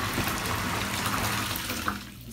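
Tap water running into a bathtub, a steady rush that dips at the very end.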